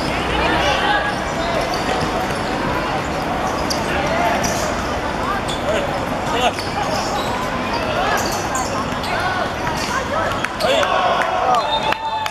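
Ball kicks and bounces on a hard court during a youth football match, with players and spectators calling out throughout. The shouting grows louder near the end.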